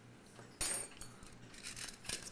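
Small steel clock screws clinking against a metal parts basket: one sharp, bright clink about half a second in, ringing briefly, then faint small clicks.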